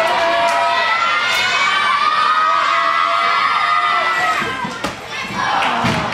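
Crowd of spectators and young gymnasts cheering a gymnast's uneven-bars dismount, with long high-pitched shouts that die away about four and a half seconds in.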